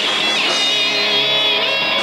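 Ska band playing live, loud and steady, with strummed electric guitar to the fore over the full band.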